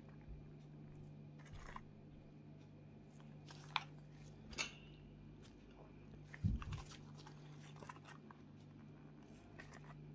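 Faint handling noises from gloved hands working a wooden stir stick and a resin mixing cup: a few brief clicks and a soft thump past the middle, over a steady low hum.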